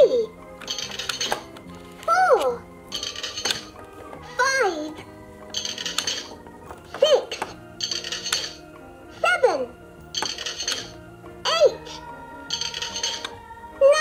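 Electronic toy cash register of a LeapFrog Scoop & Learn Ice Cream Cart, triggered again and again as a toy coin is pressed in: six times, a short jingly coin sound, followed about a second later by a brief recorded voice saying "one", over the toy's looping music.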